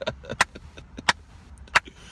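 Three sharp clicks about two-thirds of a second apart, over a faint steady low rumble.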